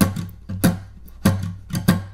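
Acoustic guitar strummed in a pulsing rhythm of short, sharp muted strokes, about six in two seconds, with a low note sounding underneath.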